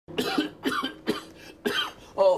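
A sick man coughing four times in quick succession, about half a second apart.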